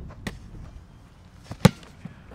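An American football being punted: a light slap as the snapped ball lands in the punter's hands just after the start, then about a second and a half later a single sharp thud as his foot strikes the ball, the loudest sound.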